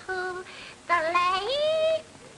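A high-pitched voice sings a short phrase with little or no accompaniment. It glides up into a held final note that stops abruptly.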